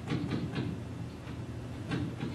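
A stylus scratching in short strokes on a pen display as a word is handwritten: several strokes in the first half second and one near the end. A steady low hum runs under them.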